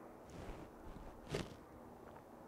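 A man drinking from a glass, faint: soft sipping and breath sounds, the loudest a brief one about a second and a half in.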